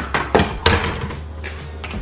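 Hard plastic toy aircraft knocking against a wooden tabletop as it is set down and handled: three sharp knocks in the first second or so.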